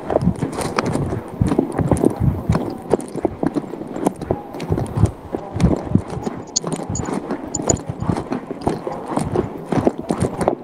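Rapid, irregular knocking and clattering, picked up by an open microphone on a video call.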